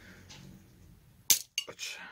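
Plastic cover of a wall light switch being prised off. There is one sharp snap about a second and a half in, followed by a few smaller plastic clicks.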